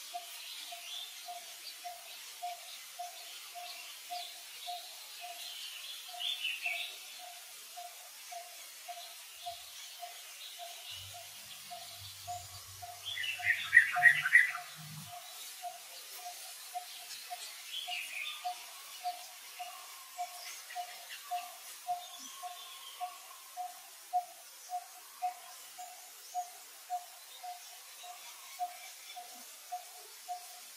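Birds calling outdoors: a low note repeated about one and a half times a second throughout, with short higher chirps now and then and a louder burst of chirping about halfway.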